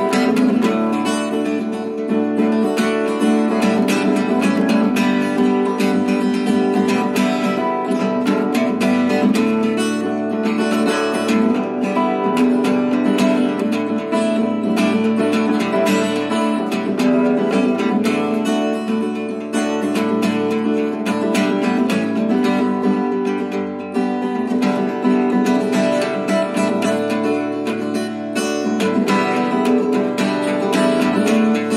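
Instrumental break in a song: a strummed acoustic guitar plays steadily and evenly, with no voice.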